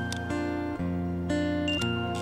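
Instrumental music from a looper: acoustic guitar notes played over layered, looped sustained tones. The notes change about every half second, with high ringing notes and a sharp click near the end.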